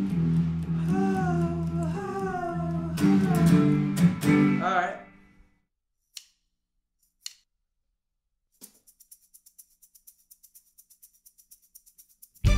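A woman singing wordless "ooh" backing-vocal phrases over a sustained guitar chord, trying out a harmony part; the sound fades out a little past halfway. After a short silence comes a faint, fast high ticking.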